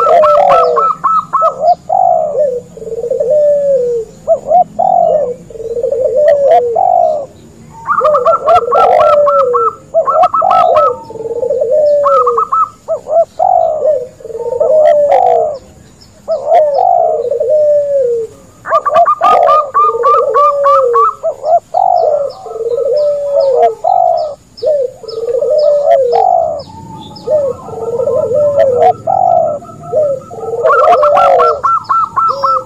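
A dove-call lure recording mixing spotted dove, zebra dove and ringneck dove: low coos that fall in pitch repeat about once a second throughout. Runs of rapid, higher pulsed notes come in several times, and faint small chirps sound in the background.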